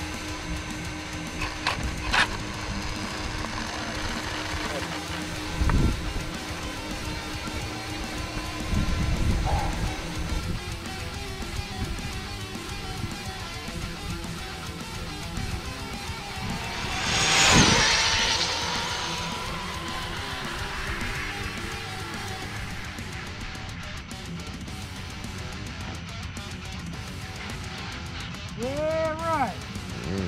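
Background music with guitar throughout. About two-thirds of the way in, a battery-electric RC speed-run car passes at high speed: a swelling whoosh with a whine that drops in pitch and fades as it goes by.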